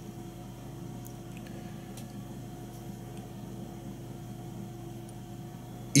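Quiet, steady low hum of background room tone, with two or three faint small ticks about one and two seconds in.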